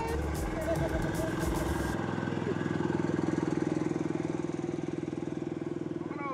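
A small engine idling: a steady low hum with a fast, even pulse that cuts off abruptly near the end.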